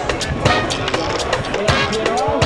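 Skateboard rolling on smooth concrete with sharp clacks of the board, heard over music.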